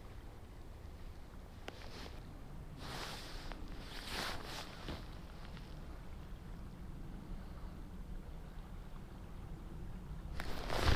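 Steady low rumble of outdoor river ambience, with two brief hissing swishes about three and four seconds in.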